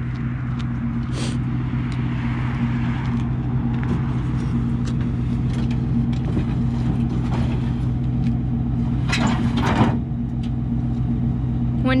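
Pickup truck engine idling steadily, with occasional knocks and scrapes of wooden frames being handled and loaded into its bed.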